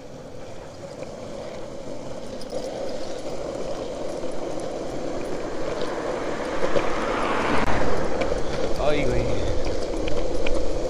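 Longboard wheels rolling on asphalt, a steady rumble that grows louder as the board gathers speed.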